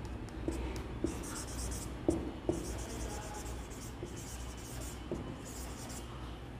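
Marker pen writing on a whiteboard: soft scratching strokes broken by several small clicks as the letters are drawn.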